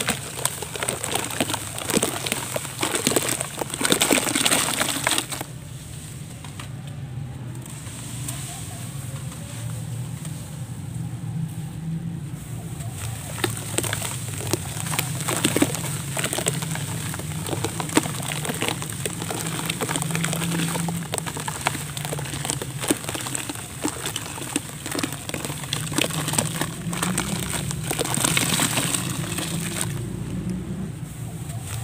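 Packed dry sand and mud crumbling by hand and pouring into foamy water in a plastic basin: a dense, crackly pour for the first five seconds or so, then softer scattered crackles and patters as more grains drop into the foam.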